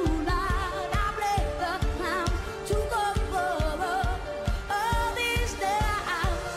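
Live pop band performance: a woman singing with a strong wavering vibrato over the band and a steady drum beat.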